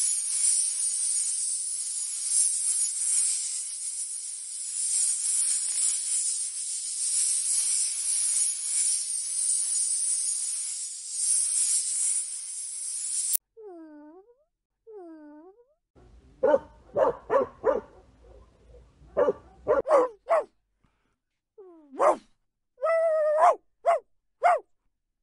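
A snake hissing in one long, steady hiss for about thirteen seconds that cuts off suddenly. Then a dog whines twice and breaks into a run of barks, with a longer yelp near the end.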